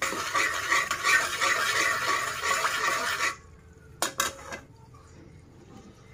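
A slotted metal spatula scrapes and stirs around an aluminium karahi holding melting ghee and cardamom pods, for about three seconds. It stops abruptly and is followed by a couple of light metallic taps about four seconds in.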